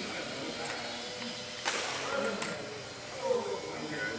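Faint background voices of people talking in a large hall, with a sharp click a little before halfway through and a lighter click shortly after.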